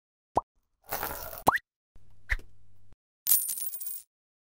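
Sound effects for an animated logo intro: a quick rising plop, a whoosh, a second rising plop, a low hum with a short blip, then a bright shimmering swish near the end.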